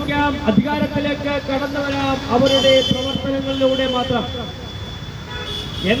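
A man's voice amplified through a handheld microphone, over street traffic. A vehicle horn sounds, with a strong blast about two and a half seconds in.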